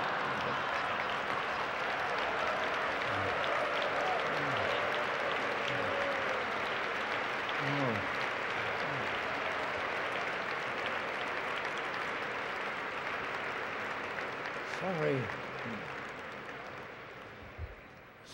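Large audience applauding steadily, with a few voices rising above the clapping, dying away over the last few seconds.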